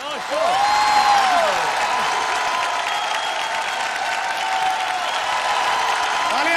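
Studio audience applauding, breaking out just after the start and holding steady, with a few whoops rising and falling in it.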